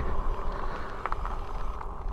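Riding noise from a WindOne K2 fat-tire e-bike on cracked asphalt: wind rushing over the microphone and the 4-inch tyres rolling as the bike goes into a turn, with a couple of faint clicks.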